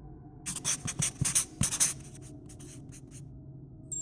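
Handwriting sound effect: a pen scribbling, a quick run of scratchy strokes about half a second in that lasts a little over a second and a half. A brief thin high tone comes in near the end.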